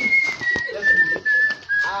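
A long whistled note, pitched high and falling slowly and steadily in pitch, with a few brief breaks.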